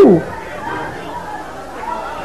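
The end of a man's loud, shouted cry in a large hall, which drops off just after the start, followed by low, mixed voices of a congregation murmuring and calling out.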